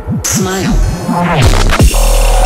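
Dubstep bass break: a synth bass sweeping quickly up and down in pitch several times a second, with a few higher gliding synth tones over it. Near the end it breaks into falling pitch glides.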